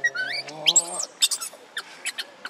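Baby macaque crying: a quick run of high-pitched squealing cries that slide up and down in pitch, in distress. A lower wavering voice sounds under the cries in the first second.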